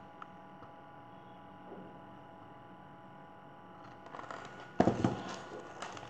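A hardcover picture book being handled and lowered, its pages and cover rustling and knocking from about four seconds in, with the loudest burst near five seconds. Before that, only a faint steady hum.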